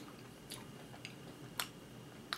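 A man quietly chewing a mouthful of frosted cupcake, with two faint wet mouth clicks, about half a second in and again about a second and a half in.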